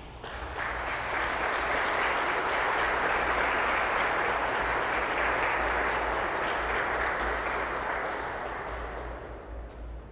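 Audience applauding in a large, reverberant cathedral after an organ piece, swelling in the first second, holding steady, then dying away near the end. A steady low hum lies underneath.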